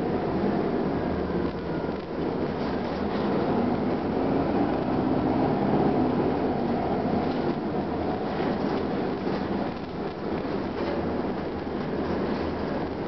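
Detroit Diesel Series 50 four-cylinder diesel engine of a 1999 Gillig Phantom transit bus running steadily under way, heard from inside the passenger cabin together with road noise.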